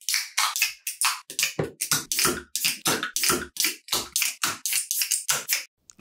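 A fast run of short, sharp percussive hits, about four a second, that fill out lower after the first second or so and stop just before the end.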